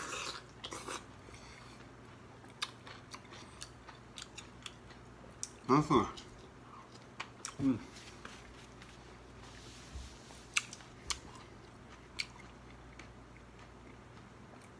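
A person chewing a mouthful of whole kiwifruit, skin and all, with small wet mouth clicks and smacks scattered throughout. Two short hummed "mm" sounds come about six and eight seconds in.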